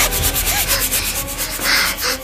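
A series of rubbing or scraping strokes, the strongest near the end.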